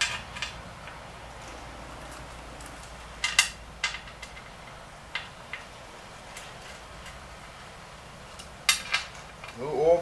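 Small metal parts clinking and tapping against the engine as oil pan bolts are handled and set in by hand: a handful of short, sharp clinks, some briefly ringing, with a pair near the end.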